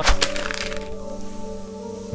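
A quick burst of sharp crackling clicks as a crowd of hands snatches at a pack of gum, trailing into a steady hiss, over background music with held tones.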